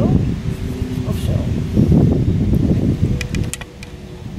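Mostly speech: a short spoken question in Dutch over low wind rumble on the microphone. Near the end comes a quick run of four or five light clicks.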